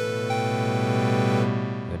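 Sampled Korg MS-20 oscillator synth in an Ableton Live instrument rack, played as a held chord from the pads: several steady notes with another added shortly in, dying away near the end. Its FM is turned down and its second oscillator has its sustain back.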